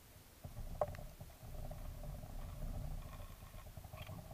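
Underwater: a motorised camera's drive starts about half a second in, a low rumble with a steady hum above it, and a sharp click just after.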